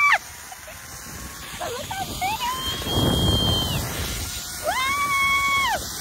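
A woman's long, high, held screams while riding a zipline: one cutting off at the very start, a fainter one in the middle and a strong one lasting about a second near the end. A short rush of wind on the microphone comes in the middle.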